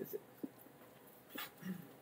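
Faint breathing and small mouth clicks from a man pausing between sentences, with a brief low voiced hum near the end.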